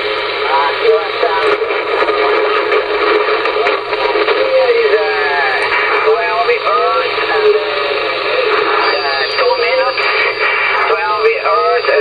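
A distant station's reply coming through a radio transceiver's speaker: a voice, thin and narrow-sounding, under steady static hiss.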